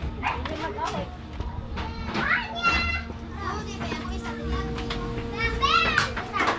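Children playing and shouting, their voices chattering, with a high held call about two and a half seconds in and a rising-and-falling high call near the end.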